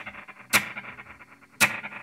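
Two sharp percussive hits on an electric guitar about a second apart, each ringing out through the VoiceLive 3's spring reverb and delay, with faint delay repeats between them: the 'spoink' of the spring effect.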